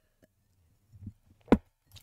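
Faint sounds of someone drinking from a glass, then a single sharp knock about one and a half seconds in, like the glass being set down on a desk.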